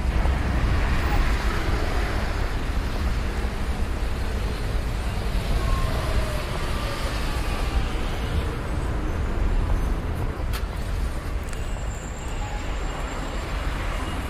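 Street traffic ambience: a steady low rumble of cars on a town street.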